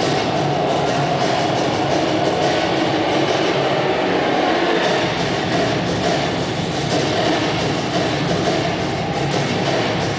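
Loud soundtrack of an on-ice projection show played over arena speakers: a dense, steady wash of sound with music underneath.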